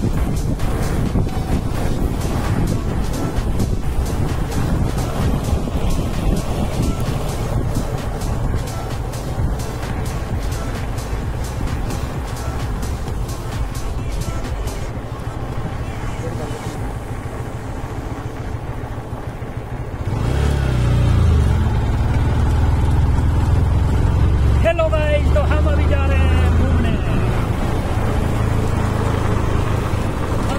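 Wind buffeting the microphone and road noise from a moving motorbike or scooter, mixed with music. About two-thirds of the way through it gets louder, with a steady low hum.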